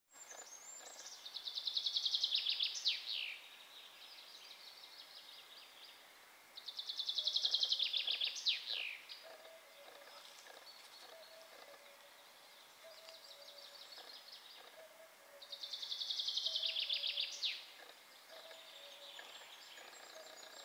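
A songbird singing three loud phrases, each about two seconds of fast repeated notes ending in a quick downward flourish. Fainter birdsong trills come in between the phrases.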